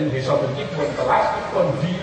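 A man's voice speaking, with a short, brighter, higher-pitched cry about a second in.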